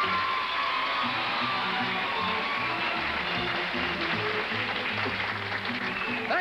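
Studio audience applauding over the game show's theme music as the host comes out.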